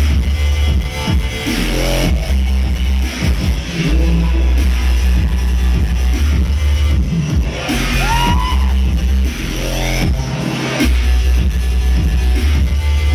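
Live electronic bass music played loud through a club PA, with a heavy bass line and an electric violin playing lines that slide in pitch over it.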